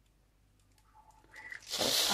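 Near silence at first, then about a second and a half in a loud, crinkly, hiss-like rustle builds up and holds.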